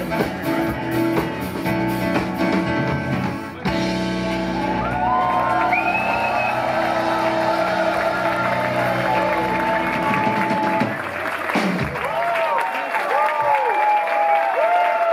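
Live band of keyboards, electric bass and drums playing the end of a song, then holding a long final chord with gliding vocal lines above it. About eleven seconds in the bass and drums stop and the audience starts applauding.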